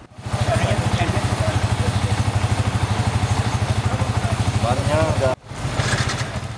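An engine idling with a fast, even pulse, with faint voices behind it near the end. It cuts off abruptly a little over five seconds in, at an edit.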